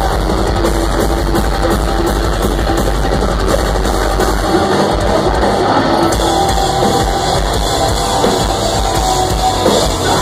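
Metalcore band playing live and loud: distorted electric guitars, drum kit and keyboards. About four and a half seconds in, the steady low end breaks into a choppier rhythm.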